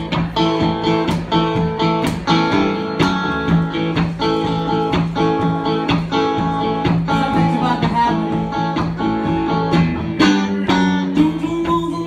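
Live band playing an instrumental guitar passage: two amplified electric guitars over a steady, evenly strummed rhythm.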